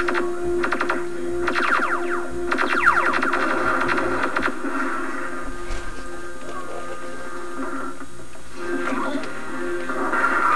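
Film soundtrack music playing from a VHS tape through a television speaker. Several quick falling sweeps come in the first four seconds over a steady held low note, then it settles into a calmer stretch.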